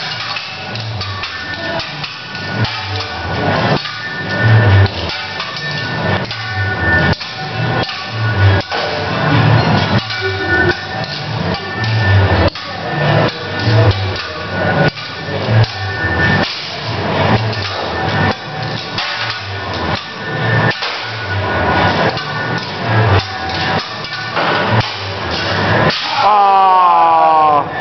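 Steel teppanyaki spatula and knife striking and scraping the flat-top griddle in quick, irregular metallic clacks, over music with a steady beat.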